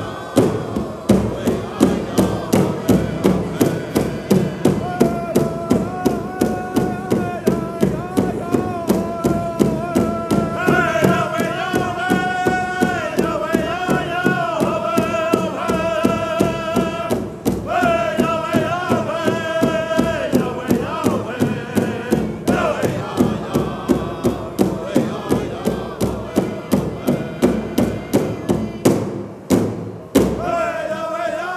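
Pow wow drum group singing in unison over a large shared drum struck together at a steady beat of about two strokes a second. High-pitched voices come in a few seconds in, rise highest in two phrases through the middle, then fall away, leaving mostly the drumbeat near the end.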